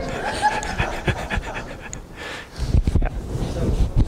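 Indistinct talking in a large room, then a cluster of heavy low thuds with breathy noise in the second half.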